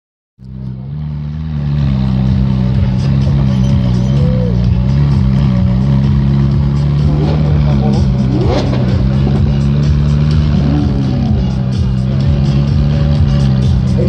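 Sports car engines idling steadily with a deep, even drone, over crowd chatter and a few rising shouts.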